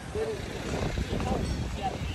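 Indistinct voices of people talking close by, in short broken snatches, over a low steady rumble.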